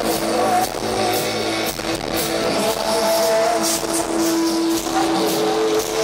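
Rock band playing live: an instrumental passage of electric guitars with long held notes over drums and cymbals.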